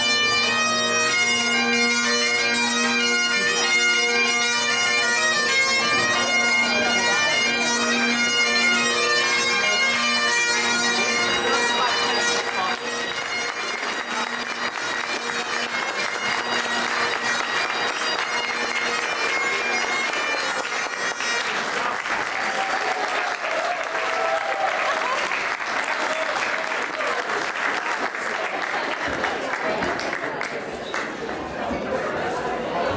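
Bagpipes playing a jig over their steady drone, loud for about the first twelve seconds and then fading. Crowd clapping and applause take over in the second half.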